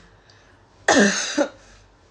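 A woman clearing her throat once about a second in, a short, sudden, cough-like burst lasting about half a second.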